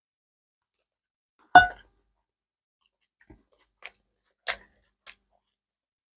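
Eating sounds: a few isolated, sharp clicks and ticks. One louder click comes about a second and a half in, and four fainter ticks follow, spaced through the second half.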